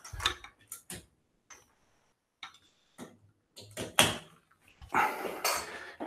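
Handling noise from lamps being put down and picked up: scattered light clicks and knocks, with a brief rustle near the end.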